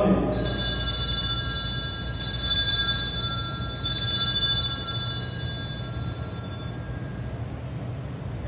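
Altar bells rung three times, about two seconds apart, marking the elevation of the chalice at the consecration. Each ring is a cluster of high, bright tones that fade away over a few seconds.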